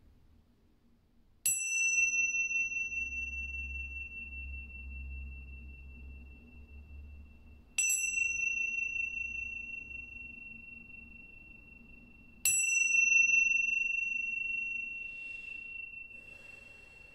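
Tingsha cymbals struck together three times, a few seconds apart. Each strike gives a high, clear ring that lingers for several seconds and is still sounding when the next strike comes.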